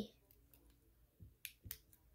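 Near silence, with a few faint, sharp clicks in the second half.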